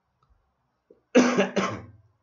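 A person coughing twice in quick succession, starting about a second in.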